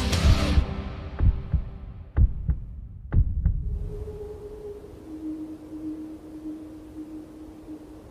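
Several low, dull thumps, spaced irregularly over the first three and a half seconds, then a faint steady hum that drops a little in pitch about five seconds in.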